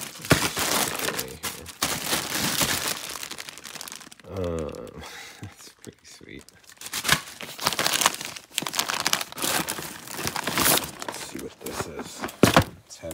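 Plastic bags and packaging crinkling and rustling as goods are rummaged through and handled in a cardboard box, with a brief murmured voice about four seconds in.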